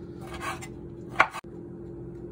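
Kitchen knife working on a bamboo cutting board: a soft scrape, then one sharp knock a little after a second in.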